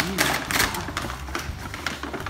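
A brown paper bag crinkling and rustling in irregular crackles as its folded top is pulled open by hand.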